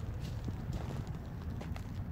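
Footsteps of a person walking along a lightly snow-covered dirt path through woods, irregular soft steps over a steady low rumble.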